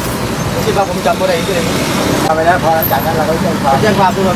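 A person talking, with steady road traffic noise behind.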